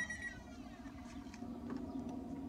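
A short steady electronic beep from the smoker's temperature alarm right at the start, then faint background noise with a few light knocks.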